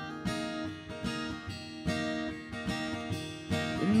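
Two acoustic guitars strumming and picking chords in a slow accompaniment, with no voice over them.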